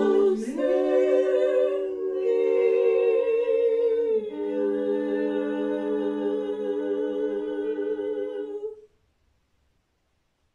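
Women's barbershop quartet singing a cappella in close four-part harmony: the closing chords of the song, held long and shifting twice before all four voices stop together about nine seconds in.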